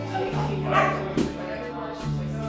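Acoustic country jam: electric bass holding low notes under strummed acoustic guitars and fiddle. About a second in, a brief sharp cry stands out as the loudest sound over the music.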